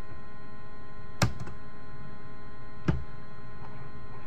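Two sharp clicks about a second and a half apart, over a steady electrical hum.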